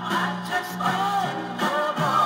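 Mid-tempo soul record playing from a vinyl single on a record player, with singing over the band.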